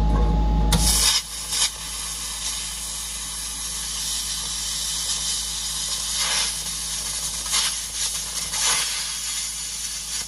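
A handheld plasma cutter cuts through a truck cab's sheet steel with a steady hiss of air and arc, surging louder now and then. A loud low rumble fills the first second before the hiss settles in.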